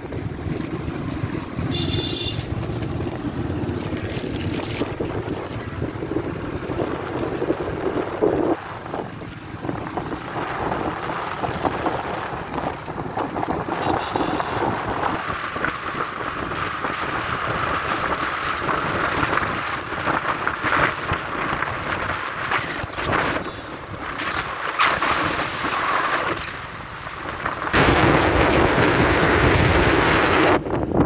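Wind buffeting the microphone of a phone carried on a moving motorcycle, a steady rush that gets much louder near the end.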